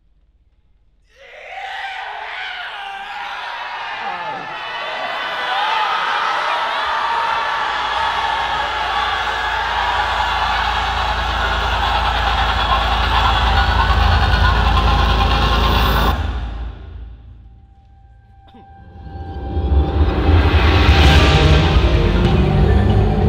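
Electronic soundtrack of an indoor percussion show: a dense wash of many overlapping voices starts suddenly over a low rumble that builds for about fifteen seconds, then cuts off abruptly. After a brief lull with a faint held tone, the ensemble's sound swells back in loudly near the end.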